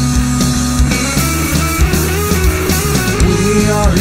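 Instrumental stoner rock played on bass guitar and drum kit, the bass sounding guitar-like through a pitch-shifter, with notes bending up and down in the second half.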